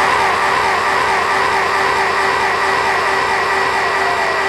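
A public-address system after a crowd's loud chant: a steady hum with two held ringing tones, and the chant's echo fading under it.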